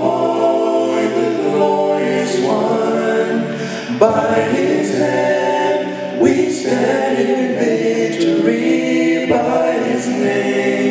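Male a cappella quartet singing a gospel song in close four-part harmony through microphones, moving between held chords every couple of seconds.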